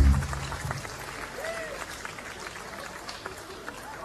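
Concert audience clapping and cheering as a song ends, with the band's last low note dying away in the first second. One call from the crowd rises and falls about a second and a half in.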